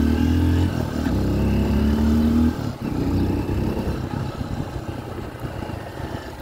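Honda XR150L motorcycle's single-cylinder engine pulling the bike along: the revs climb, dip briefly at a gear change less than a second in, climb again, then fall away sharply when the throttle closes about two and a half seconds in, and the engine runs quieter as the bike slows. The bike is brand new and being ridden gently in its break-in period.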